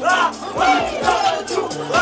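Hip-hop music playing loudly, with voices shouting over it in short, repeated yells.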